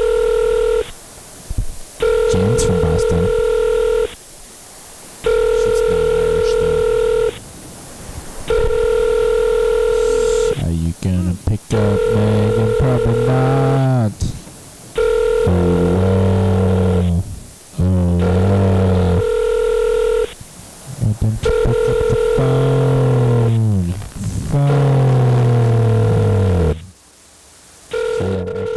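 Telephone ringing tone heard over the line while a call waits to be answered, a steady tone repeating about two seconds on and one second off. From about halfway through, pitched sounds that slide downward play over the ringing.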